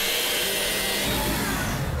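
Cartoon sound effect of air rushing through a large opened round hatch: a steady, loud whoosh, with background music under it.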